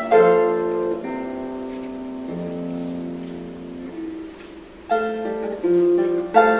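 Solo Celtic lever harp, plucked: a chord at the start and another about a second in, left ringing and slowly dying away through a quieter stretch, then new plucked notes come in about five seconds in.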